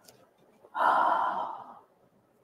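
A woman sighing once: a single breathy exhale of about a second, starting just under a second in.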